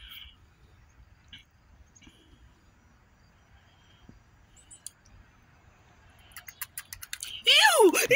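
A fish strikes at bait held at the water surface, making a quick run of sharp clicking, sucking splashes near the end. Loud shrieking laughter breaks out right after.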